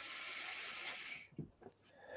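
A man taking a long, deep breath, heard as a soft hiss that fades out after about a second and a half, followed by a faint knock. It is one of the deep breaths taken to settle before channelling.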